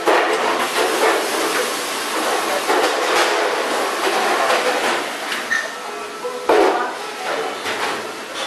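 Stainless-steel water-adding machine running water from its taps into steel trays: a steady rushing hiss that starts suddenly, with a sharp clatter of metal about six and a half seconds in.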